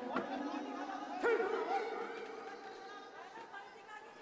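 Crowd chatter and shouting voices in a large hall, with a sudden louder shout about a second in, then dying down.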